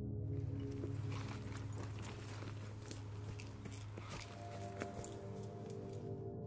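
Footsteps running over a forest floor, twigs and dry litter crackling underfoot, starting just after the beginning, over a steady low ambient music drone.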